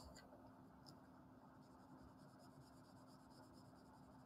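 Faint scratching of a colored pencil writing on paper, barely above near silence.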